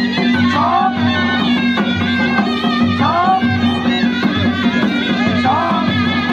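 Live Ladakhi folk music: a surna, a double-reed shawm, plays a sliding, ornamented melody over a steady low drone, backed by daman drum strokes.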